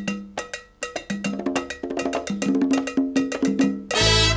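Latin percussion playing alone at the opening of a tropical dance track: sharp drum and cowbell strikes in a rhythm that grows busier as it goes.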